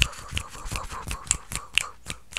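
Fast, crisp clicks of fingers and nails worked close to a microphone for ASMR, about five a second.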